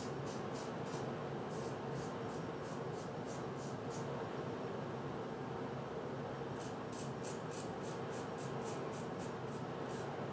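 Gem Jr single-edge safety razor scraping through stubble on the upper lip in short, quick strokes, about three a second. The strokes break off for two or three seconds in the middle, then resume. A steady low hum sits underneath.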